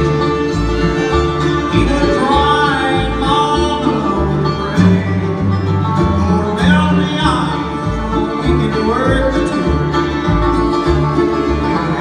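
Acoustic bluegrass band playing live without vocals: fiddle, five-string banjo, mandolin and acoustic guitar over a steady upright bass beat, with gliding melody notes.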